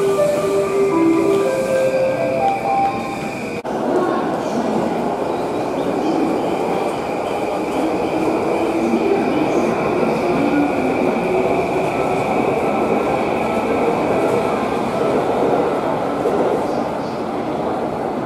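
Busy train-station platform: the steady din of a commuter train at the platform and a crowd walking. In the first few seconds a short melody of steady notes plays, which breaks off abruptly.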